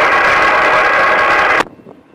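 Burst of loud static from a scanner radio tuned to the railroad, cutting off suddenly about a second and a half in.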